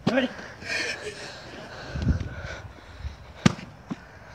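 A plastic water bottle landing on the ground with one sharp smack about three and a half seconds in, a failed flip.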